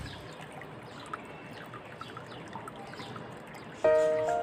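A steady trickle of running water, like a small stream, with faint short high chirps over it. Piano music begins just before the end.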